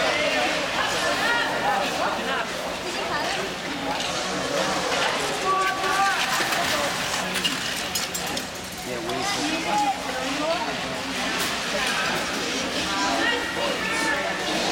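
Several spectators' voices overlapping throughout, talking and calling out indistinctly, with a few short clicks around the middle.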